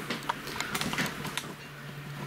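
Camera handling noise: a quick, irregular run of small clicks and rustles as the camera is swung around, over a faint steady hum.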